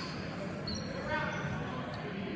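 Rubber-soled shoes squeaking on a hardwood gym floor as fencers step and shift, with two short high squeaks, one a little before the middle and one near the end. Steady crowd chatter echoes in the hall.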